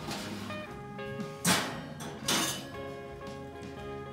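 Background music, with two brief metal clatters about a second and a half in and again under a second later, from a metal pan being pulled out of a home oven.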